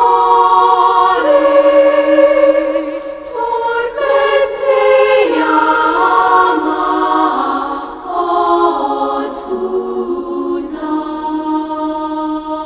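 A choir singing long held notes that step and slide from one pitch to the next, in a slow chant-like line.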